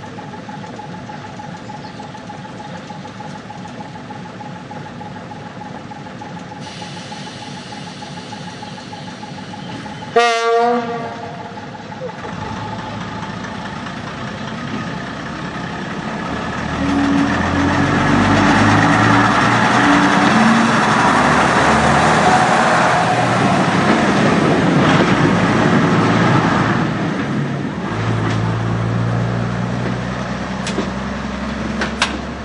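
Diesel railbus idling, then a short horn blast about ten seconds in. Its engine then opens up and runs loudly, its note climbing and dropping in steps as the railbus pulls away, before easing off near the end.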